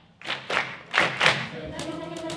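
Four sharp percussive hits in two quick pairs, then a children's choir comes in near the end on a held chord.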